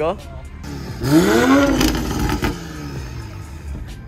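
Toyota GR Supra with a freshly fitted Boost Logic downpipe given one loud rev. The engine note climbs about a second in, peaks, and falls back over the next second or so, with exhaust rasp on top.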